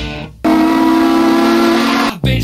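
Rock music briefly drops out, and a steam locomotive's chime whistle sounds one loud, steady blast of about a second and a half, two tones held together, cut off abruptly.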